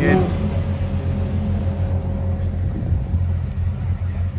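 Lamborghini Huracán STO's naturally aspirated V10 running at low revs as the car rolls slowly in, a steady low rumble.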